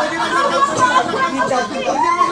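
Several people talking and calling out over one another: lively group chatter.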